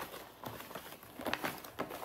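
Paper rustling and crinkling as a stack of letters and cards is handled and pulled out of a gift bag, in short irregular scrapes and crackles.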